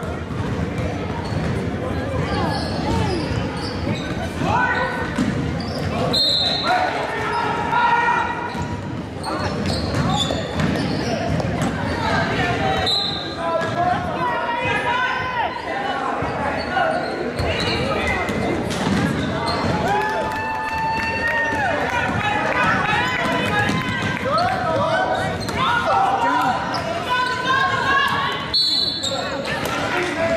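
A basketball bouncing on a hardwood gym floor, with shouting voices from players and the sideline echoing in a large hall.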